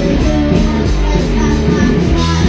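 Live rock band playing a song: electric guitars, bass and drums going at full volume.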